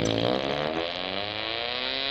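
Car engine accelerating, its pitch climbing steadily as the revs rise.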